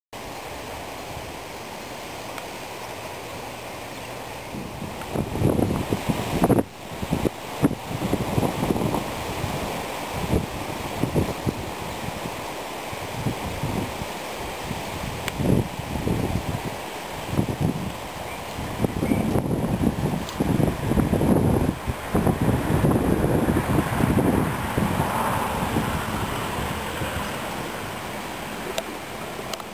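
Wind buffeting the camera microphone in irregular gusts, a low, rough rumble that starts about five seconds in and comes and goes.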